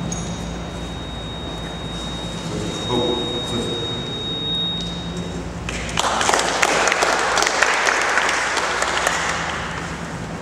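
Audience applauding. The clapping starts about halfway through, runs for about four seconds and fades near the end.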